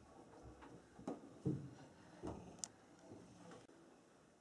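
Faint handling noises of a ball being moved about on a wooden table: a few soft knocks and rubs, the loudest about a second and a half in, and a sharp little click a little after two and a half seconds.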